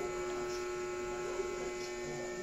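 A steady electrical hum with one thin, unchanging tone in it.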